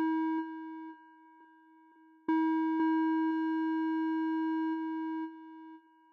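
Electronic tones from an avant-garde music track: a steady held tone that fades out within the first second, a short near-silence, then another long tone that starts with a click about two seconds in, with two faint clicks soon after. It holds steady and then drops away a little before the end.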